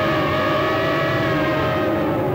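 A single held electronic tone with overtones, steady in pitch, from the serial's dramatic background score, a synthesizer note sustained under the scene.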